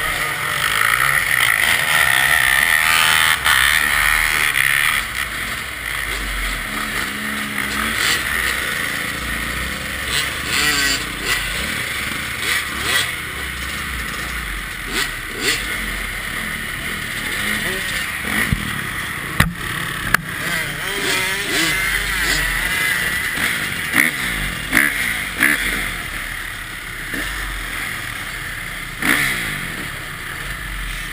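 Several dirt bike engines running close by, loudest for the first few seconds as a row of bikes launches. Throttles are then blipped up and down, with a few sharp knocks in the second half.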